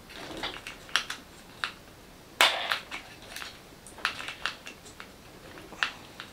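Light, irregular clicks and short scrapes of plastic parts being handled as a tightly done-up wheel nut is undone by hand and the wheel worked off a 1/10 RC truck's hub. The loudest is a scrape about two and a half seconds in.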